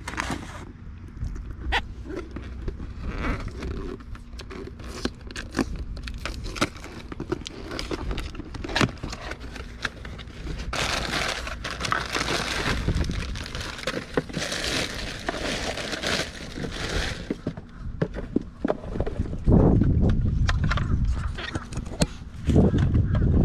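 Cardboard boxes and plastic packaging being handled and opened: scattered clicks and knocks, with two spells of crinkling and rustling in the middle. A loud low rumble comes in near the end.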